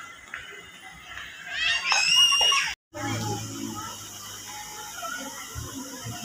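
A high-pitched scream with rising pitch, from about one and a half to nearly three seconds in. After a sudden break it gives way to steady background noise.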